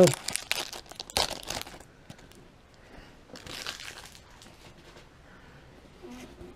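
Foil wrapper of a baseball card pack being torn and crinkled open by hand, a stubborn wrapper that is hard to open. The crackling is busiest and loudest in the first two seconds, then trails off into a few fainter crinkles.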